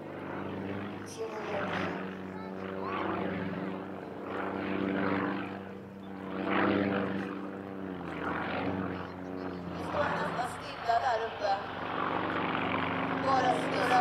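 Sukhoi Su-31 aerobatic plane's nine-cylinder radial engine and propeller running through aerobatic manoeuvres, swelling and fading in loudness, with its pitch dipping about eight seconds in.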